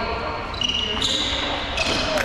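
Volleyball rally in a large sports hall: sneakers squeaking on the court floor, the ball struck about a second in and again near the end, with players' voices.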